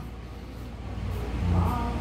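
A steady low background hum, with a man's faint drawn-out hesitation sound starting about three-quarters of the way through.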